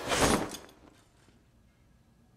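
A hanging plastic curtain swept aside by hand: one short, loud swishing rustle that fades out within about a second.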